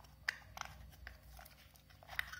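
A few faint clicks and crinkles of plastic being handled, the sharpest about a quarter second in, over a low steady hum.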